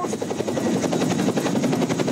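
A CH-47 Chinook tandem-rotor helicopter running on the ground with its rotors turning, making a loud, steady, rapid chop.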